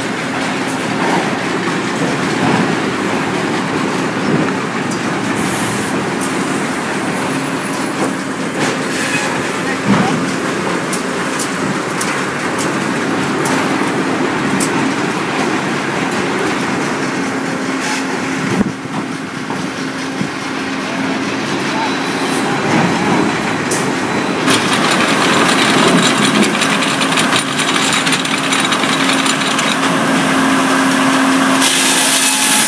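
Sawmill log-handling machinery running: a steady mechanical din with a low hum, clatter and a few sharp knocks. About 24 seconds in it turns louder and brighter, with the chain conveyor and saw feeding logs into the mill.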